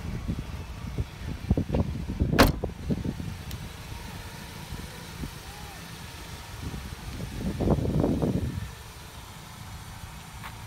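Knocks and handling noise of someone climbing out of a car, with a sharp click a little over two seconds in and a louder stretch of rustling and scuffing near the eight-second mark, over a low steady rumble.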